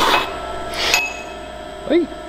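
Coffee being slurped hard off a cupping spoon, sprayed over the palate: a short airy slurp, then a second about a second later. A brief voiced 'mm' comes at the end.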